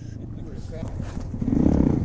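A motorcycle engine running at a distance, a low rumble that grows louder about a second and a half in, with faint voices.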